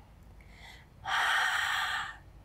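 A woman's forceful breath out through the mouth, loud and about a second long, starting midway: the Pilates exhale as she curls up into a chest lift.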